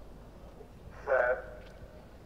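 A man's voice calls out once, loud and short, about a second in, with an echo trailing after it over a low, steady stadium background hum.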